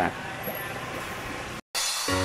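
Steady background noise hiss, cut off suddenly about one and a half seconds in, followed after a brief gap by a short bright hiss.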